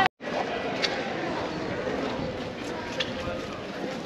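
Busy city street ambience: a mix of passers-by talking and general traffic and urban noise, with a couple of faint clicks. The sound drops out briefly at the very start.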